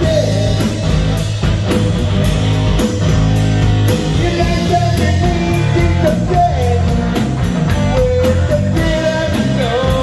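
A live rock band plays loudly, with a singer over electric guitar, bass guitar and a drum kit whose cymbals keep a steady beat.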